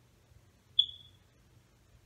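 A single high, clear ping a little under a second in, ringing out for about half a second.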